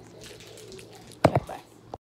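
Faint wet sounds of a fork stirring noodles in a bowl, then two sharp knocks close together a little past halfway and a click at the end.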